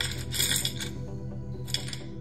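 Soft background music with a steady, pulsing low tone, with bright metallic jingling about half a second in and again briefly near the end.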